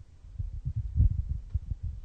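Handheld microphone handling noise: irregular low thumps and rumble as the microphone is passed from one person's hand to another's.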